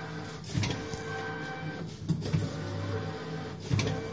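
Servo-driven flatbed screen printing unit running slowly, its squeegee carriage travelling forward and back over the screen. A steady motor hum carries three sharp knocks about a second and a half apart.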